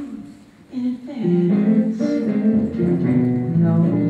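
Music with a plucked guitar starting about a second in, after a brief lull, playing steady held notes.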